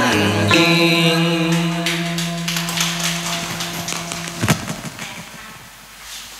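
The backing track's final chord held and slowly fading out as the song ends, with a single thump about four and a half seconds in.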